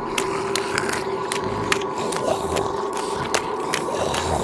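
Cartoon soundtrack: steady held tones under a regular clicking beat, about two to three clicks a second.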